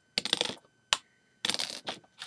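Small hard plastic Lego pieces clattering as they are handled: two short rattling bursts of clicks, with a single sharp click between them.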